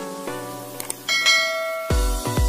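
Bell-like notification chime sound effect ringing about a second in, after a run of short plucked notes. Electronic music with a heavy, regular bass beat starts just before the end.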